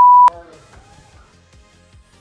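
A steady, loud, pure beep tone, the standard censor bleep laid over a flubbed line, cutting off sharply about a quarter second in. Quiet background music with a steady beat follows.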